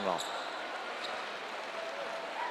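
Faint, steady background noise of a basketball game broadcast from a gym, with a couple of brief faint high squeaks or clicks.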